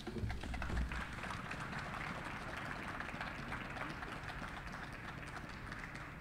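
Audience applauding: a dense patter of many hands clapping that sets in about half a second in and eases slightly toward the end. A short low thump at the very start.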